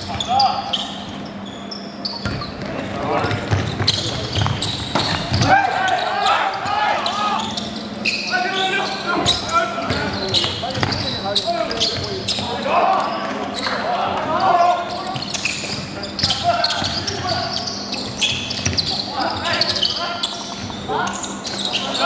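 Basketball bouncing on a hardwood gym floor amid players' voices calling out, with repeated sharp knocks throughout, echoing in a large hall.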